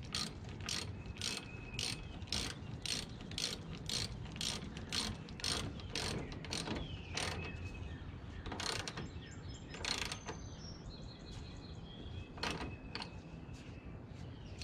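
Hand ratchet wrench clicking in short back-strokes, about two a second, then slowing to a few separate strokes, as a fastener at the top radiator hose is tightened.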